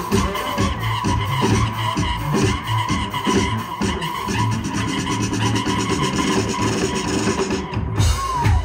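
Live saxophones and drum kit playing a driving dance groove, with steady drum hits, a repeating low bass line and a held high note. The sound thins out briefly just before the end.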